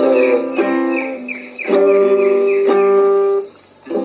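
Acoustic guitar strummed in slow chords while the C and G chords are practised. A C chord rings and is struck again about half a second in; a second chord follows about a second and a half in and rings for nearly two seconds before dying away.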